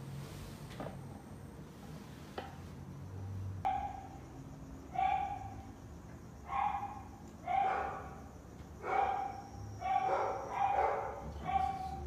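A dog barking repeatedly, about eight barks at roughly one-second intervals, starting about four seconds in.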